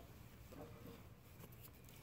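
Near silence: only faint background noise.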